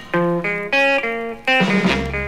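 Early-1960s Italian pop record in its instrumental break: a guitar plays a short melody of about five held notes, without vocals.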